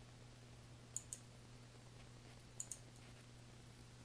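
Two faint computer mouse clicks, each a quick press and release, about a second and a half apart, over a faint steady low hum; otherwise near silence.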